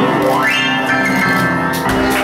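Live blues performance: a man's singing voice slides up into a long held note over ringing piano chords.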